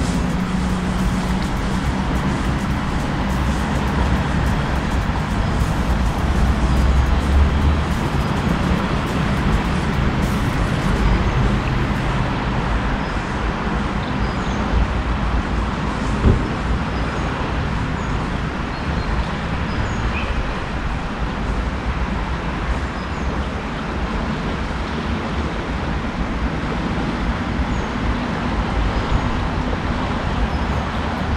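Steady rushing of flowing river water, with some low rumble.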